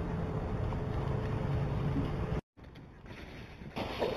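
Steady wind noise with a low hum on an outdoor security camera's microphone, cutting off abruptly about two and a half seconds in. Quieter outdoor noise follows, with a rustle of dry leaves near the end as an animal runs through them.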